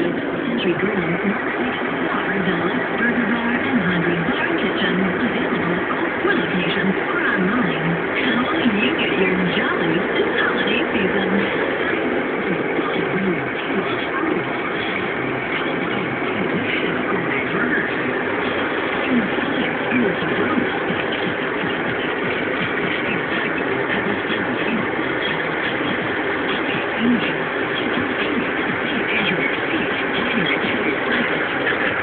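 Steady road and engine noise heard inside a moving car on a freeway, with muffled, indistinct voices underneath, mostly in the first half.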